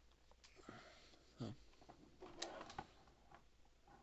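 Near silence, with a few faint, scattered clicks and knocks from a hard plastic Power Rangers Claw Zord toy being handled.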